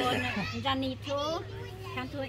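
Speech: several people talking, with high, bending voices, no sound other than voices standing out.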